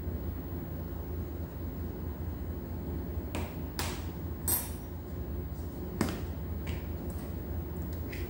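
A steady low hum with a handful of light clicks and taps from about three seconds in, as a plastic measuring spoon and small containers are put down and picked up on a steel worktop and a vanilla bottle is uncapped.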